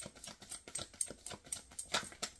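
A deck of tarot cards being shuffled overhand in the hands, the cards giving quick light clicks and slaps at about six or seven a second.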